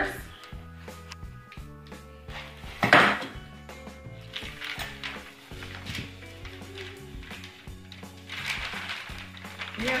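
Paper lining rustling and crinkling as it is peeled off a loaf of soap, with a louder crackle about three seconds in. Quiet background music plays underneath.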